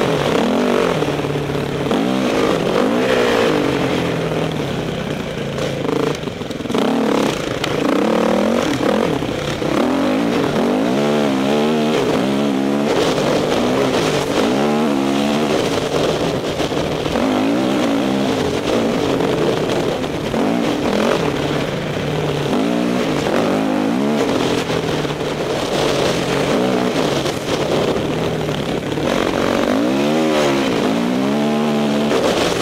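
Honda CRF450 dirt bike's four-stroke single-cylinder engine at full trail pace, revving up and falling back again and again as the rider throttles and shifts, with wind rushing over the helmet-mounted microphone.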